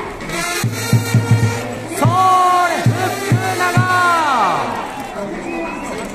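Baseball cheering band of trumpets and a drum playing a short fanfare, with the fan section shouting along. The drum thumps quickly at first, then the trumpets hold loud notes over a few more beats, and the last note falls away steeply about four seconds in.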